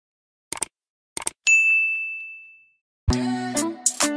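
Two short clicks, then a bright single ding that rings and fades over about a second: the click-and-bell sound effect of a subscribe-button animation. The song's music comes in about three seconds in.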